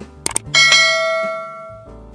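Subscribe-button sound effects from an outro animation: two quick mouse clicks, then a bright notification-bell ding that rings and fades over about a second, over soft background music.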